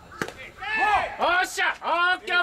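A bat striking a pitched baseball once, a short sharp crack just after the start, followed by loud drawn-out yelling from several voices.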